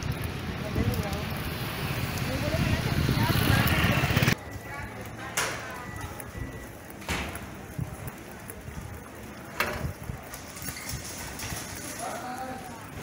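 Outdoor ambience with wind on the microphone and faint background voices, which drops suddenly about four seconds in to quieter street ambience with distant voices and a few sharp clicks.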